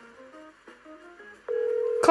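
Soft background music of scattered plucked notes, then about one and a half seconds in a steady, much louder phone ringback tone starts as a 911 call connects, all played through laptop speakers.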